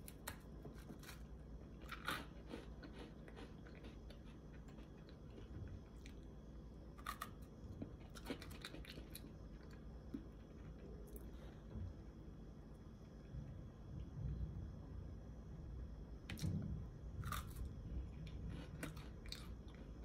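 Faint chewing of a mouthful of glazed bread and soft cheese, with a few scattered quiet crunches.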